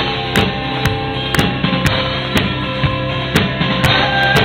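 Live rock band playing: electric guitar over a drum kit, with a steady beat of about two drum hits a second.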